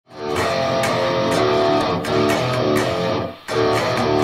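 Electric guitar playing a riff, with notes struck in an even rhythm of about two a second and a brief break near the end.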